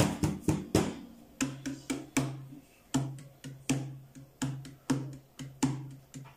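Nylon-string classical guitar strummed in a steady rhythm, with a percussive slap of the strumming hand on the guitar top about every three-quarters of a second and lighter strums between.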